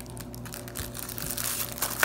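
Clear plastic packaging wrap crinkling under the hands as a sealed tablet case is handled, with a louder crackle near the end. Faint background music underneath.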